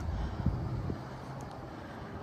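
Low, steady outdoor rumble, with wind buffeting the phone's microphone and a faint low hum.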